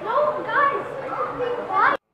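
Several children's voices talking and calling out over one another, cut off abruptly at the end.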